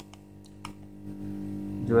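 A few faint clicks and scrapes as a piece of X-ray film is worked under the edge of a cracked Samsung Galaxy J5 Prime screen to pry the glued panel loose, over a steady low hum.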